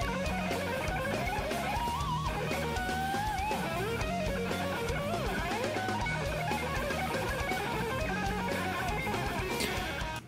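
Electric guitar shred playing: fast lead lines with pitch bends and wavering vibrato over a steady, pulsing low part.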